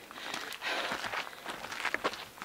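Footsteps on a dirt hiking trail, a loose run of soft irregular steps.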